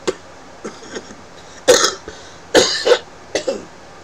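A man coughing three times, just under a second apart, starting partway through; the last cough is weaker.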